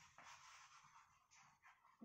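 Near silence, with faint scratches of chalk writing on a blackboard.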